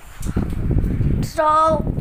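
Low rumbling handling noise with a few clicks from a phone being moved and rubbed close to its microphone, lasting about a second, then a child says a short word.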